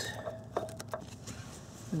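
A few light metallic clicks and taps in the first second, from a magnetic pickup tool and the loosened knock-sensor bolt being handled in the engine bay.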